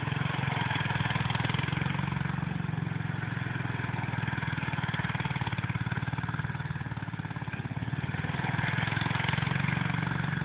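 Go-kart's small engine running steadily at mid revs as the kart goes round in donuts, easing off slightly about seven seconds in and picking up again near the end.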